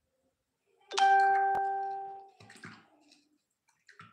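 A single bell-like chime with a clear pitch, starting suddenly about a second in and fading out over about a second, followed by a few faint knocks.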